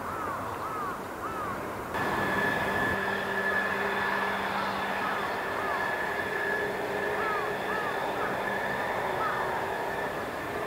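A steady machine whine over a low hum starts abruptly about two seconds in and holds without change. Short, repeated bird chirps come and go throughout.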